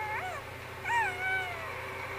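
The Child (Baby Yoda) making two small high-pitched cooing calls: a short rising-and-falling one at the start, then a longer one about a second in that rises and glides slowly down.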